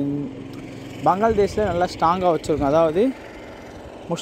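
Only speech: a man talking, with a drawn-out word at the start and a short phrase in the middle, over steady low background noise.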